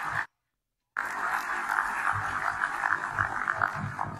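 Broadcast audio breaking up: it drops to dead silence twice, then from about a second in a steady, crackly, narrow muffled noise with a few low thumps.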